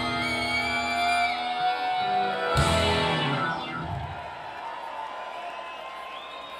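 Live rock band with electric guitars playing the closing bars of a song: a final crash on the last chord about two and a half seconds in, which then rings out and fades.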